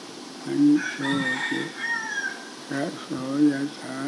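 A rooster crowing once, starting about a second in and lasting about a second and a half, its pitch dropping at the end, over a man's slow, halting speech.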